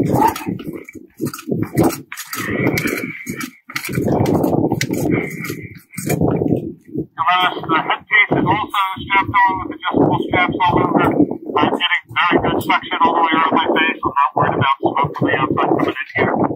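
A man's voice muffled by the rubber facepiece of a Navy oxygen breathing apparatus, with breathing through the mask. Speech comes mostly in the second half.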